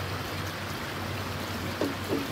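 Steady rushing of a creek's flowing water.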